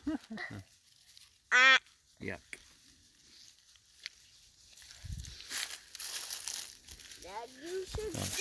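A short high-pitched whoop from a voice, loudest early on, then from about five seconds in the rustling crunch of footsteps through dry fallen leaves.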